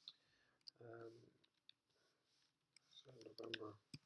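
Near silence broken by a few faint, isolated computer keyboard clicks, with a soft murmured voice about a second in and again near the end.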